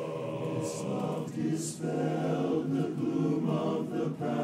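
Men's barbershop chorus singing a cappella in close four-part harmony, with many voices sustaining chords and two crisp sibilant consonants in the first half.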